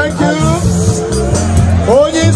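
Loud music with a steady bass line under a singing voice whose notes glide up and down.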